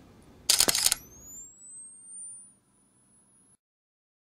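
Camera sound effect for a logo: a shutter click about half a second in, then the thin high whine of a flash recharging, rising in pitch and cutting off abruptly.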